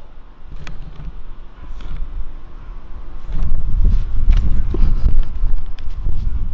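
Wind buffeting the camera microphone, a low rumble that gets much louder about three seconds in, with a few faint clicks.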